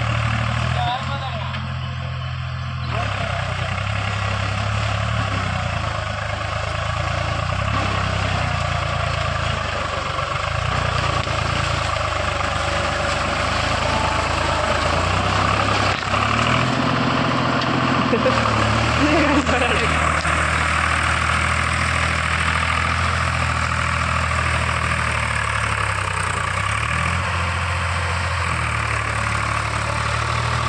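Diesel tractor fitted with iron cage wheels, its engine running steadily while working in flooded mud. The engine note dips and comes back up a couple of times, around the middle and again near the end.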